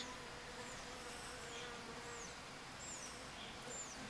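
Faint, steady buzzing of Asian honeybees (Korean native bees) packed in a defensive ball at the hive entrance around an invading yellow-legged hornet. A thin hum holds through the first two seconds or so, then fades.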